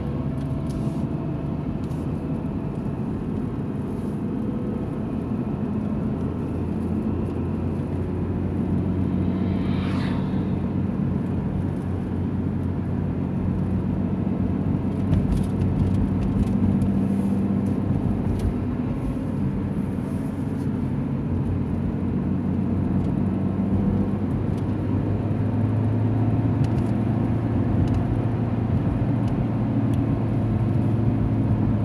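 Steady road noise of a car driving at highway speed, heard from inside the cabin: a low engine and tyre drone. About ten seconds in, a brief rush swells and fades, like a vehicle passing.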